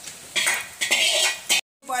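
Steel kitchen utensils and vessels clinking and scraping for about a second, then cut off abruptly.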